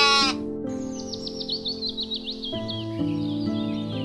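A sheep's bleat with a wavering pitch cuts off abruptly just after the start, then a bird gives a quick run of high, downward-swooping chirps, over soft background music.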